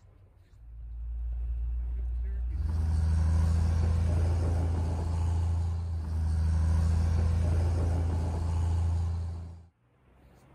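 A heavy vehicle's engine running close by with a steady deep hum. It builds over the first couple of seconds, then holds loud and steady until it cuts off suddenly near the end.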